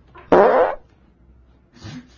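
A person breaking wind: one loud fart lasting about half a second, followed by a softer, shorter noise near the end.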